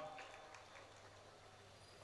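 Near silence: room tone, with the last spoken word fading out in the first half second.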